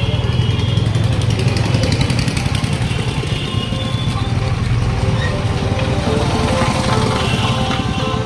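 Motorcycle engine running at low speed in dense town traffic, a steady low rumble under the noise of the surrounding vehicles.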